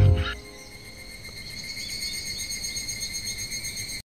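A band's final guitar chord cuts off at the very start. Then comes a steady, high-pitched chorus of chirping insects that pulses a few times a second and grows slightly louder, until it stops abruptly at the end.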